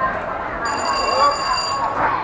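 A round-end buzzer sounds a steady high tone for about a second, then cuts off, marking the end of the kickboxing round over crowd and voices.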